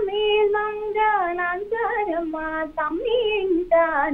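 A young woman singing a classical-style Telugu devotional song solo and without accompaniment, holding long notes with ornamented glides between them and taking short breaths between phrases.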